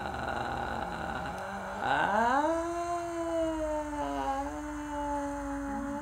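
Free-improvised wordless vocalising: a dense layer of overlapping hummed voices, then about two seconds in one voice slides steeply up into a long held note that wavers slightly.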